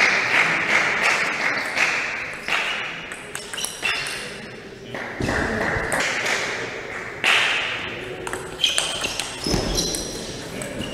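Table tennis ball clicking rapidly off bats and table through a long rally, with a hiss that comes and goes behind it.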